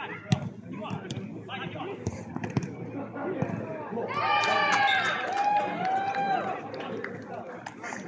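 Football players shouting to each other during play, with loud drawn-out shouts around the middle. A sharp thud of the ball being kicked comes just after the start.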